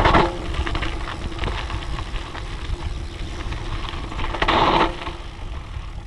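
Dirt jump bike on hard-pumped slick tyres rolling fast down a dirt trail: steady tyre and wind rush with fine gravel crackle and frame rattle, and a faint steady hum underneath. A louder burst of rushing noise comes about four and a half seconds in.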